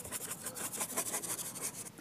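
Flat brush scrubbing acrylic paint onto a painting board: a steady run of quick, scratchy strokes.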